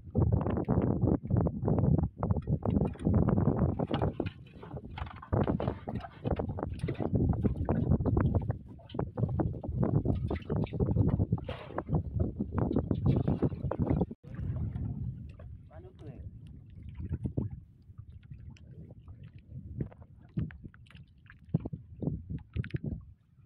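Water splashing and knocking against a wooden boat as a bamboo eel trap is handled and emptied, with people talking. The busy, choppy sound eases off about two-thirds of the way through.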